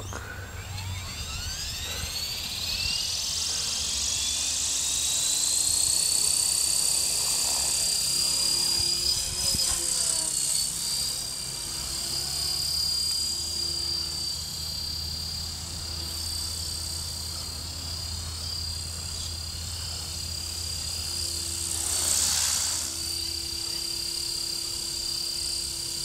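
E-flite Blade 400 electric RC helicopter spooling up as it lifts off, its motor and gear whine rising steeply in pitch over the first few seconds. It then holds a steady high whine with rotor noise while it flies, swelling briefly louder about 22 seconds in.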